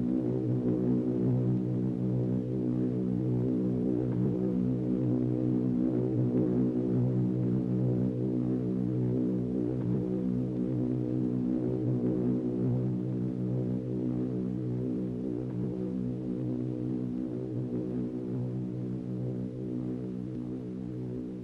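A steady low drone made of evenly spaced pitched layers, holding one unchanging pitch throughout and easing slightly near the end.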